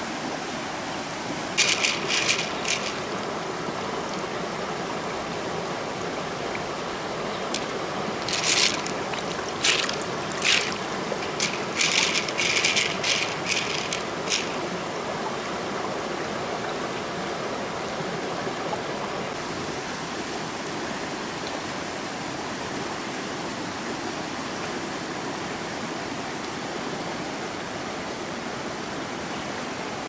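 Shallow river running steadily over stones. Twice it is broken by clusters of brief, sharp clicks and splashes, the denser run about eight to fourteen seconds in, as wet hands work an open mussel shell in the water.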